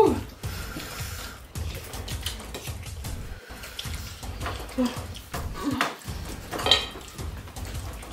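Chopsticks clicking, tapping and scraping irregularly against plates as several people pick up and eat noodles.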